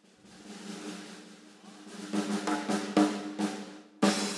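Live band's drum kit playing a drum roll that builds from soft to a few loud hits in the second half, over a steady low tone.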